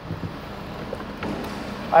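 A freshly started 6.7-litre Power Stroke V8 turbo-diesel idling steadily, heard through the open driver's door, with handling noise as the camera moves and a faint click a little past halfway.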